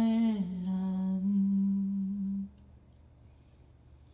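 A man's voice holding one long wordless sung note into a microphone, stepping down a little in pitch near the start and breaking off about two and a half seconds in.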